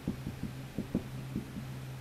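Marker strokes and taps knocking faintly against a whiteboard as someone writes, a quick irregular series of soft knocks, over a steady low hum.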